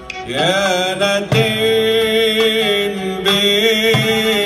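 A cantor's male voice sings a long ornamented note in Middle Eastern style, sliding up into it about a third of a second in and then holding it with a slight waver. Oud and frame drum accompany, with a drum stroke about a second in.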